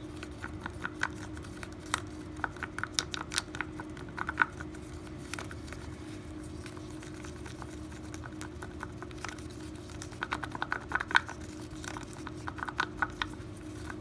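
Wooden craft stick stirring two-part epoxy in a small plastic cup, clicking and scraping against the cup's sides in quick irregular runs: one run in the first few seconds and another in the second half, with a lull between. A steady low hum runs underneath.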